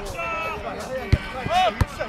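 A football being struck twice during play, two sharp thuds about a second apart, with players shouting across the pitch.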